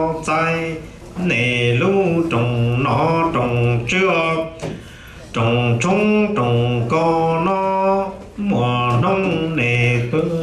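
A man singing a Hmong funeral chant (txiv xaiv song) unaccompanied, in long held notes that step up and down in pitch, breaking off briefly about a second in, around the middle and past eight seconds.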